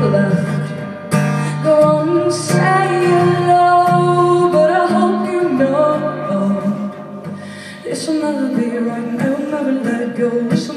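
A woman sings with her own strummed acoustic guitar, live in a small club, holding long notes through the middle.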